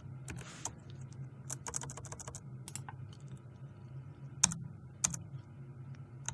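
Computer keyboard typing: a run of irregular key clicks as a command line is entered, with two louder keystrokes about four and a half and five seconds in.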